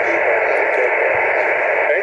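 Yaesu FT-817 receiving in upper sideband on the 17-metre band: steady static hiss from its speaker, thin and narrow like a telephone line.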